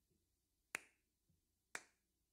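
Two sharp snaps of a man's hands, about a second apart, in a quiet room.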